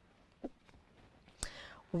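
A quiet pause with a faint short blip, then a sharp click about a second and a half in, followed by a short breath just before a woman starts speaking.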